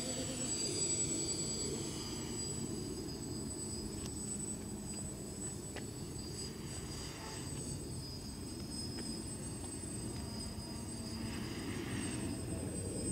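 Distant DJI F450 quadcopter's four motors and propellers buzzing in flight over a low rumble, the pitch falling in the first couple of seconds and the buzz growing louder again near the end.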